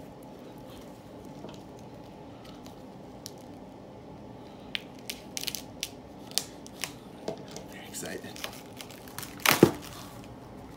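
Clear plastic wrap on a stack of comic books being slit with a small cutter and peeled away. Scattered sharp crinkles and crackles start about halfway through and grow denser, with the loudest just before the end.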